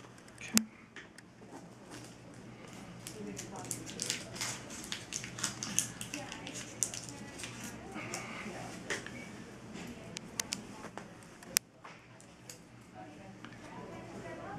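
Rustling and crinkling of an adhesive tape strip and its backing being handled and pressed onto a toe as a dressing, with scattered sharp clicks, busiest in the middle.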